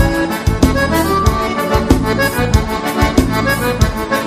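Accordion playing an instrumental melody with a band over a steady dance beat.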